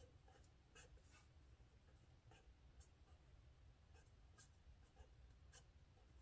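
Faint scratching of a pen on notebook paper while Chinese characters are written by hand, in a series of short, separate strokes.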